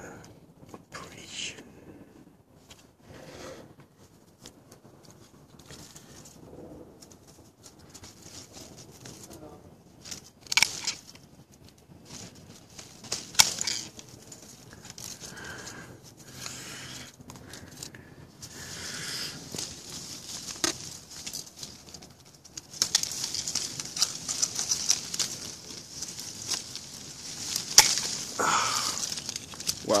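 Stanley aviation snips cutting thorns off lemon tree branches, with sharp snips now and then. Leaves and branches rustle, most heavily over the last several seconds.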